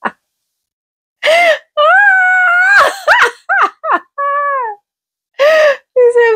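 A woman laughing helplessly in a run of long, high-pitched, wailing cries that rise and fall in pitch, starting about a second in.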